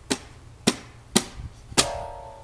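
A children's toy electronic keyboard plays a drum beat of about two sharp hits a second. Near the end, a held electronic note sounds together with the last hit.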